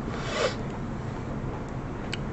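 A short rasping, breath-like noise lasting about half a second near the start, then only the steady low hum of the recording's background.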